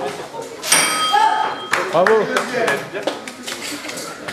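A bell rung once, less than a second in: a bright ringing tone that dies away over about a second, signalling the end of the savate round. Voices follow.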